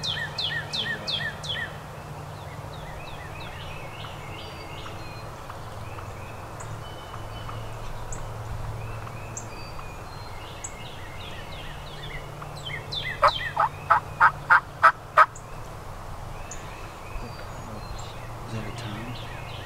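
Wild turkey hens calling: a run of short falling yelps at the start, softer calls scattered through the middle, then, about thirteen seconds in, the loudest part, a run of about seven sharp calls roughly three a second.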